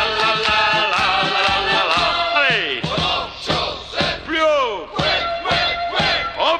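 Recorded Walloon-language novelty song from a 1984 single: a held note with vibrato over a steady beat, then from about two seconds in a group of voices yelling in repeated falling whoops.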